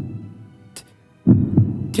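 Dramatic heartbeat sound effect: one low double thump, lub-dub, a little over a second in, over a faint steady drone.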